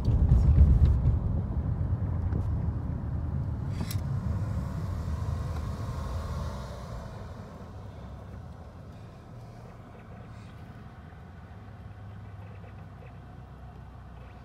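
Low rumble of a moving car, loudest in the first seconds, dying down after about seven seconds to a quieter steady hum.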